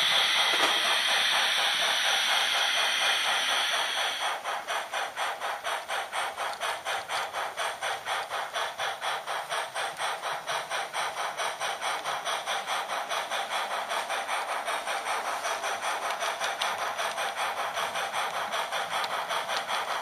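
H0 model steam locomotive's sound decoder: a steady hiss of steam, then from about four seconds in an even, rapid chuffing at about four beats a second as the train pulls away.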